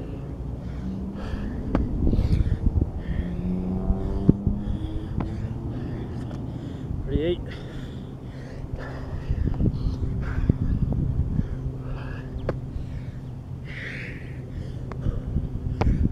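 A man breathing hard through burpees, with short knocks and thuds of hands and feet on concrete. A steady low hum runs underneath.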